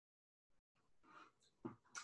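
Near silence: room tone, with a few faint brief sounds in the second half.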